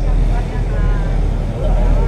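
Steady low rumble of a river tour boat underway, its engine running with water rushing along the hull, and faint voices underneath.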